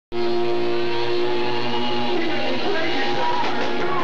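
Electric guitar played through an amplifier on stage, holding long, ringing notes: warm-up playing before the band's set starts.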